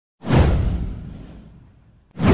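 Intro whoosh sound effect: it starts suddenly about a quarter second in, sweeps downward over a deep low rumble, and fades away over about a second and a half.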